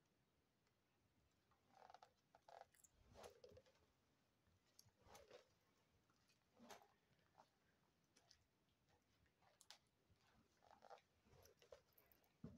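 Near silence with faint, irregular footsteps scuffing on a gritty stone floor, a step or scrape every second or so.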